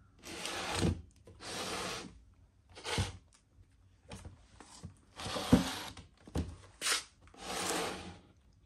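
A hand rubbing across the textured wood-grain top of a JBL speaker cabinet: a series of about eight dry rubbing strokes, each under a second long, at flecks of spilled white paint.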